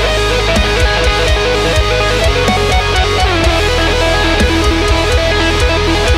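Ibanez RG8 eight-string electric guitar playing a fast, distorted lead line with two-handed tapping, the notes sliding up and down. Behind it, a metal backing track with drums and a steady low bass.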